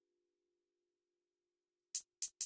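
Near silence, then a single short, bright closed hi-hat hit from a drum sample right at the end.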